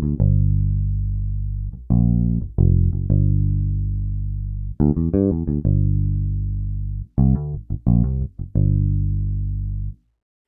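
Evolution Flatwound Bass, a sampled P-style four-string electric bass with flatwound strings and a single split-coil pickup, plays a finger-style passage with a rich bassy tone. Quick runs of short notes alternate with long held low notes that slowly fade, and the passage cuts off at the end.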